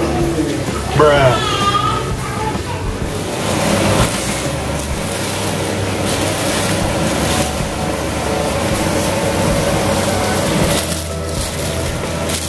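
A person's voice calls out briefly about a second in, then plastic snack wrappers crinkle and rustle as they are handled, over a steady background din.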